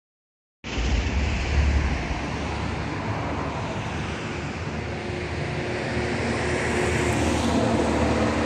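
Steady outdoor background noise, rumble and hiss with wind on the microphone and a faint hum of distant traffic, cutting in suddenly under a second in after silence.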